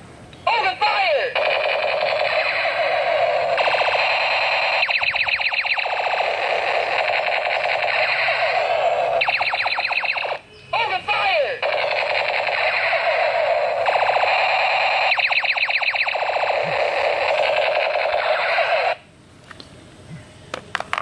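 Battery-powered musical toy space pistol playing its electronic sound effects through a small speaker. The effect is a warbling sweep followed by stretches of very rapid machine-gun-like pulsing. It plays twice, each run about nine seconds long, with a brief gap about ten seconds in.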